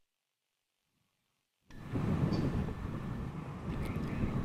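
Silence for about the first second and a half. Then a steady rushing outdoor background noise cuts in, with a faint high steady tone over it.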